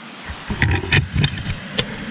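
Handling of a nylon backpack: rustling fabric with a low rumble of movement and about half a dozen small clicks or taps, such as zipper pulls and buckles knocking.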